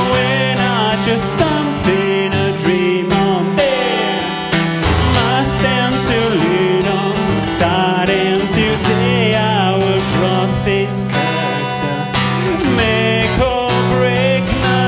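A man singing while strumming an acoustic guitar: a solo voice-and-guitar song, the strumming steady under a sung melody that moves up and down in pitch.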